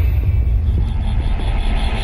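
A loud, steady, deep rumble like a heavy engine running.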